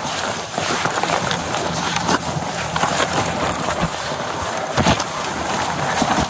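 Rustling and scuffing handling noise with scattered knocks as a man is moved onto an ambulance cot. The loudest knock comes just before the five-second mark.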